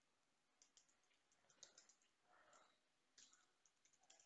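Faint computer keyboard typing: short clusters of key clicks with pauses between them.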